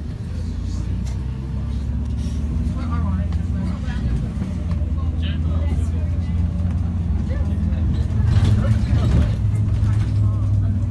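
Bus engine running as the bus drives along, heard from inside the passenger cabin, a steady low hum whose pitch rises a little near the end as it picks up speed.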